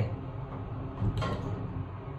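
Steady low hum inside an elevator cab, with one brief sharper sound about a second in.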